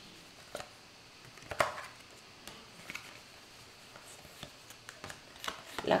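Faint, scattered light taps and clicks of tarot cards being drawn and laid down, the loudest about a second and a half in.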